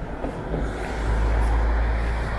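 Low, rumbling outdoor noise that swells about a second in, with no distinct events: traffic on the seafront road or wind on the microphone.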